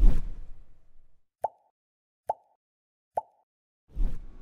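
Animated end-card sound effects: a low thud dies away over the first second, then three short, identical pops come about a second apart.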